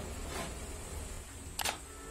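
A quick double click, like a computer-mouse click sound effect, about three-quarters of the way through, over a faint low hum.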